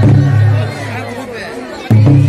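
A festival crowd's voices chattering and singing over a steady low hum, with a sharp drum stroke near the end.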